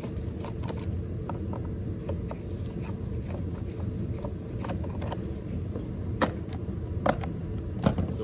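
Screwdriver backing out the air-filter cover screw on a Stihl 038 chainsaw: scattered small metal clicks and ticks, with a few sharper clicks near the end. A steady low hum sits under it throughout.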